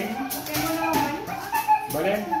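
People's voices talking in a room.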